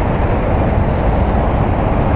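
Chevrolet LS2 6.0-litre V8 idling with the hood open: a steady, even rumble.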